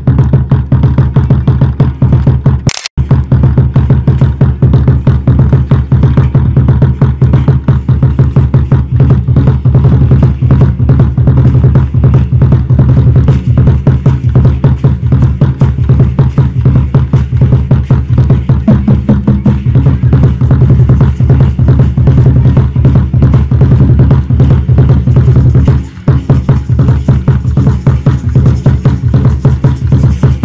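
Loud music of fast, steady drumming for an Aztec dance, with a brief break about three seconds in and a short dip in level near the end.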